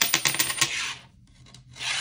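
A tossed coin landing on a wooden tabletop, bouncing and rattling for about half a second before it settles. A short scrape follows near the end, as a hand slides across the wood.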